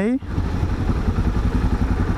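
Yamaha XT 660Z Ténéré's single-cylinder four-stroke engine running at low speed in traffic, a low, rapidly pulsing engine note.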